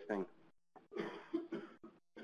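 A person coughing: a few short, rough bursts about a second in.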